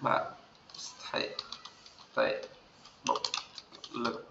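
Typing on a computer keyboard: scattered keystrokes with a quick run of clicks near the end.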